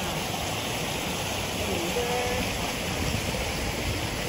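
Shallow stream water running over granite slabs and boulders, a steady rushing.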